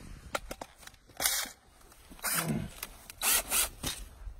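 Short bursts of harsh scraping and grinding, three times with the last the strongest, as the auger bit of a cordless drill bores into the dirt.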